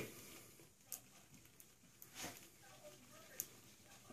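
Near silence, with faint soft squishing and a few light ticks as a synthetic kabuki makeup brush is swirled on shaving soap in a tub to load it.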